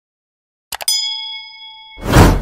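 Sound effect of a subscribe-button animation: a couple of quick mouse clicks about three quarters of a second in, followed at once by a bright bell-like ding that rings and fades for about a second. A loud whoosh starts right at the end.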